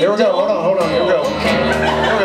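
A man singing a slow, wavering vocal line over strummed guitar in a live song.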